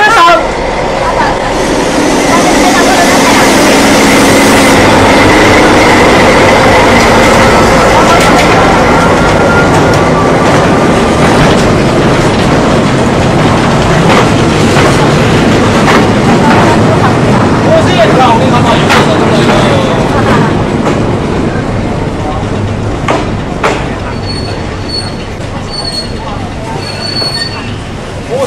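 A diesel freight train passes at close range: the locomotive followed by covered freight wagons rolling over the rails. A thin wheel squeal runs through roughly the first ten seconds, with the clack of wheels over rail joints throughout. The sound is loudest in the first third and slowly fades as the wagons go by.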